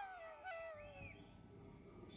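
Faint background flute music: a melody line steps down in pitch and fades out about halfway through.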